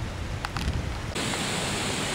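Outdoor wind noise buffeting the camcorder microphone, a steady rumbling hiss with a couple of faint clicks. Just after a second in it switches abruptly to a brighter, steadier hiss.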